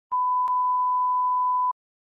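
Steady 1 kHz reference tone of the kind that runs under SMPTE colour bars, a single unbroken beep lasting about a second and a half before it cuts off abruptly, with one faint click about half a second in.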